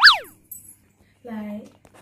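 A quick downward-gliding whistle-like tone, dropping steeply in pitch over about a third of a second, typical of a transition sound effect added in editing. A short vocal sound follows about a second later.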